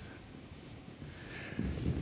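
Marker pen writing on a whiteboard: two short, faint scratchy strokes, about half a second and a second in.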